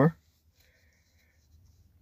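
A man's voice trailing off at the very start, then near silence with only faint room tone for the rest of the time.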